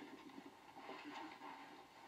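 Near silence: faint, indistinct background noise.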